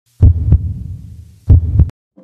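Heartbeat sound effect: two double thumps, each pair a deep 'lub-dub' about a third of a second apart, the pairs about a second and a quarter apart.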